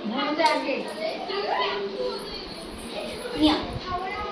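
Children's voices and chatter, with other people talking over one another.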